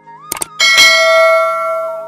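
Subscribe-button animation sound effects. A quick double mouse click comes about a third of a second in, followed by a bright bell chime that rings out loudly and fades over about a second and a half.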